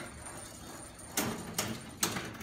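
Reels of a 1926 Caille Superior Operators Bell nickel slot machine spinning under its clock-timed mechanism, then stopping with a couple of sharp mechanical clunks a little past a second in.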